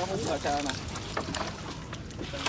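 A gill net being pulled in by hand over the side of a small boat, with scattered small splashes and clicks as the wet mesh comes aboard, and low talk in the first part.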